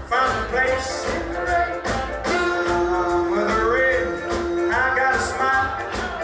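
Live swing band playing, with a male lead vocalist singing over the band; about a third of the way in one long note is held for a couple of seconds.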